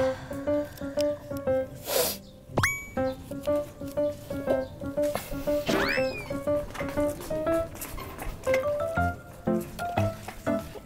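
Light, bouncy background music with short plucked melody notes. Added sound effects lie over it: a whoosh about two seconds in, a quick upward squeak right after, and a rising-then-falling whistle-like effect around six seconds.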